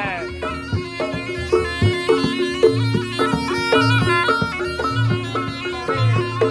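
Reog Ponorogo ensemble playing live: a slompret (reedy shawm) carries a stepping melody over regularly struck drums and gongs.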